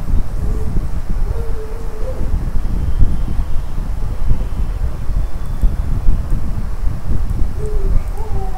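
Steady low rumbling noise like wind buffeting a microphone, with a faint wavering tone drifting in and out.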